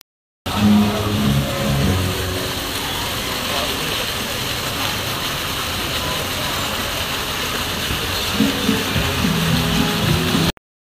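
Steady splashing hiss of water from a row of fountain jets falling back into the pool, starting about half a second in, with people talking in the background.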